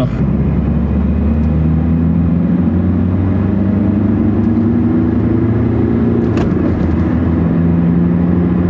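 Ford Mondeo's 1.8 TDCi turbodiesel engine and tyre noise heard from inside the cabin while cruising, a steady low drone whose pitch creeps slowly upward. A single short tap sounds about six and a half seconds in.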